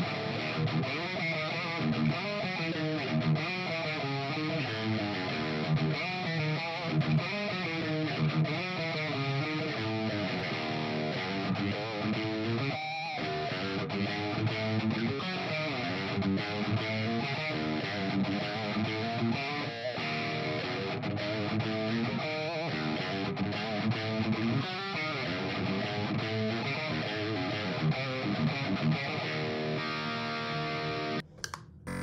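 Stratocaster-style electric guitar played through an amp, a busy run of quickly picked notes and riffs that changes pitch constantly. This is a baseline take of the strings before a vibrating break-in gadget is used on them.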